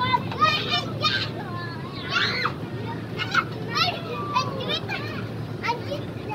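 Children shouting and squealing in short, high-pitched bursts as they play, over a steady low hum of fairground background noise.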